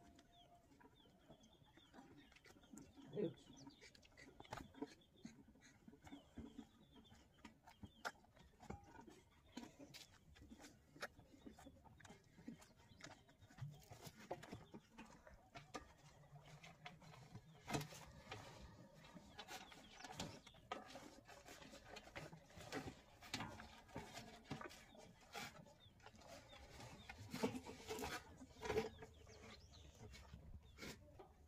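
Faint farmyard background with soft bird chirps and scattered light clicks and knocks, a few of them louder.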